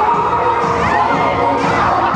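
Audience cheering and shrieking over a loud pop dance track, with a couple of high-pitched screams rising above the crowd.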